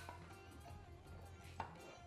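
Two short clicks, the second about a second and a half in, from an aluminium pressure cooker's lid and whistle weight being handled and set on the vent, over faint background music.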